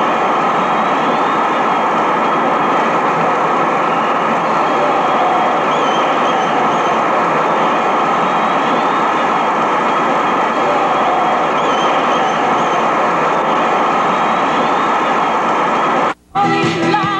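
Steady, loud rushing roar of a crowd picked up by a camcorder microphone, with faint wavering high voices above it.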